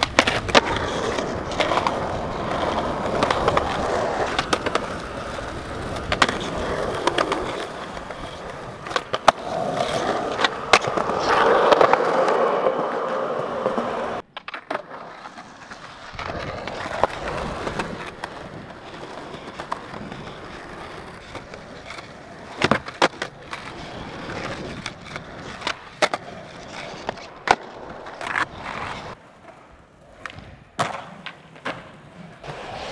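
Skateboards on concrete: wheels rolling with a steady rumble, broken by sharp clacks of the board popping, hitting ledges and landing. The rolling noise drops off abruptly about halfway through and is quieter after, with scattered clacks.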